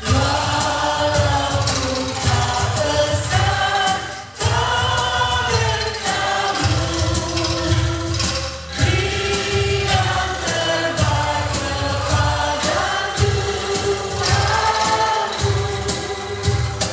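Choir singing a hymn, with women's voices leading, accompanied by a bamboo angklung ensemble, one long sung phrase after another.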